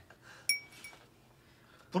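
A single bright, ringing clink of glass or tableware about half a second in, followed by a fainter tick, then quiet room tone.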